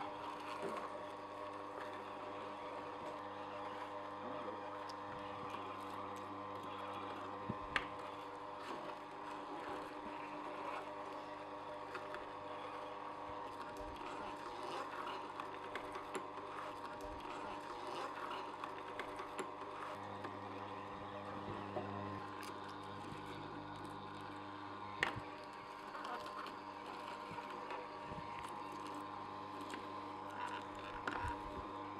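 Omega Juice Cube 300S horizontal slow juicer running at maximum pressure, its motor and gear drive humming steadily as the auger crushes iceberg lettuce and celery. A few sharp clicks stand out over the hum.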